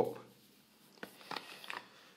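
Faint handling noise from a hookah hose being pulled free of its packing: a few soft clicks and rustles about halfway through.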